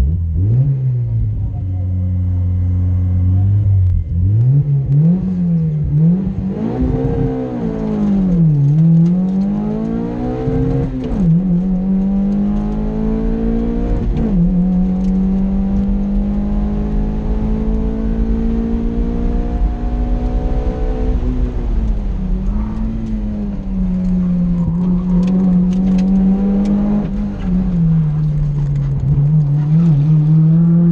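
Sprint race car engine heard from inside the cockpit. It holds steady low revs for about four seconds, then launches and climbs repeatedly, the pitch rising and dropping at each gear change. A long, slowly rising pull follows, then the revs dip and climb again near the end as the car brakes and accelerates through the course.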